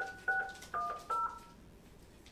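Telephone touch-tone (DTMF) keypad beeps: four short two-note tones in quick succession, ending about a second and a half in, as a conference-call code is keyed in.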